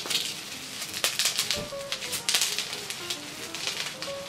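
Clear plastic wrapping crinkling and crackling in irregular bursts as it is pulled off a small lip balm tube. A few faint musical notes sound underneath.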